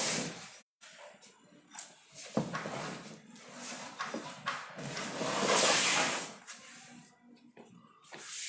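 A cardboard shipping box being handled: rustling and scraping of the cardboard flaps, loudest in a longer scrape about five to six seconds in.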